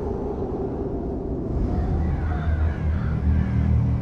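A low, noisy rumbling drone from trailer sound design, swelling from about halfway through as a steady low tone builds under it, with faint wavering whistles above.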